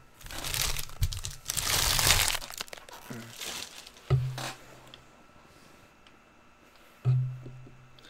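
Foil trading-card pack wrappers crinkling and rustling under the hands for a couple of seconds, then two dull thuds on the table, at about four and seven seconds.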